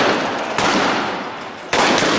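Three loud, sharp gunshot-like bangs, about half a second and then a second apart, each trailing off in a long echo.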